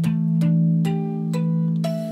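Electric guitar harmonics (bell tones) at the 12th fret, picked string by string: about five bell-like notes half a second apart, each higher than the last, ringing on over one another.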